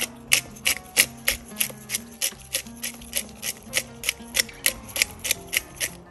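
Hand-twisted pepper grinder grinding black pepper, a sharp click about three times a second as the top is turned back and forth.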